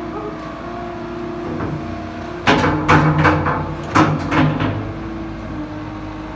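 Caterpillar 907H2 compact wheel loader's diesel engine running steadily while the hydraulic boom raises the bucket, with a burst of several loud clanks and knocks about halfway through.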